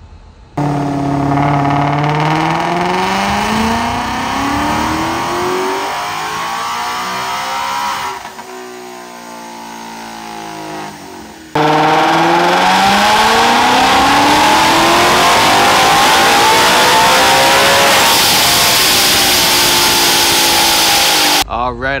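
Supercharged Ford Mustang GT 5.0 V8 pulled at full throttle on a chassis dyno, its revs climbing steadily. It drops back and goes quieter partway through, then comes in louder about halfway and climbs again before cutting off abruptly near the end.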